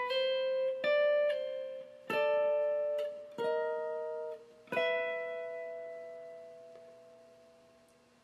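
Electric guitar played slowly, note by note. A couple of single notes on the B string are followed by three two-note double stops on the B and G strings, each one fret higher than the last. The final double stop rings out and fades away.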